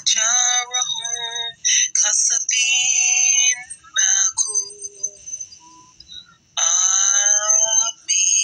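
A high-pitched chanted voice that sounds electronically processed, delivering Quranic recitation in several short melodic phrases with a longer pause before the last phrase.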